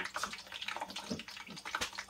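Chicken pieces frying in lard in a stainless steel pot: a steady sizzle of many small crackling pops, with one sharper knock near the end.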